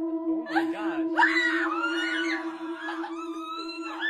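A woman's high-pitched squeals and whimpering cries, several wavering bouts that rise and fall, the last one drawn out, over a steady low hum.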